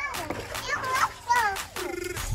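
Pool water splashing, with a young child's voice and background music.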